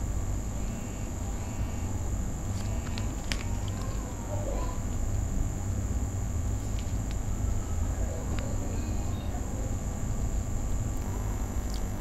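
Steady background noise: a low hum under a constant high-pitched tone, with a few faint short clicks scattered through.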